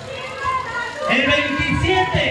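A man's shouted voice amplified through a handheld microphone, starting about a second in, over voices from the crowd.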